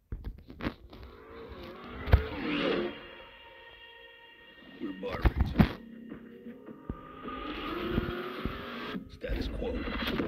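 Cinematic car-commercial soundtrack: dramatic music with deep impact hits, the loudest about two seconds in and a pair near the middle, swelling towards a rising engine-like tone near the end.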